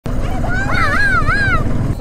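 Low, steady motorcycle engine rumble, with a high, wavering call rising and falling above it for about a second in the middle.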